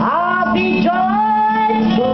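A woman singing through a PA, with a live band of keyboard and electric bass accompanying her; her voice holds and slides between sustained notes.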